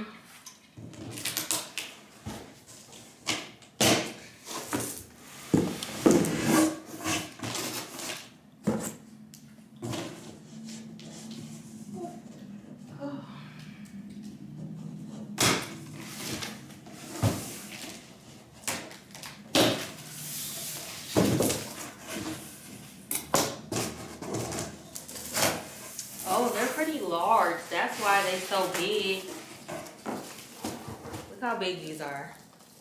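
Cardboard box being opened and a lampshade unpacked: a run of sharp knocks, thumps and rustles of packaging being handled. A voice is heard near the end.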